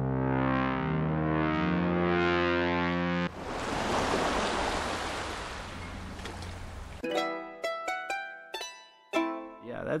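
Spitfire Audio LABS software instruments played in turn. First comes a bass synth patch of sustained stacked tones with pitch bends. About three seconds in it gives way to an airy, noisy atmospheric pad that slowly fades. The last three seconds are a run of single plucked mandolin notes, each dying away quickly.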